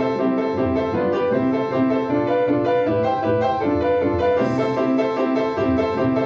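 Upright piano played with both hands in a continuous passage of sustained notes, with one strongly struck, accented chord about four and a half seconds in.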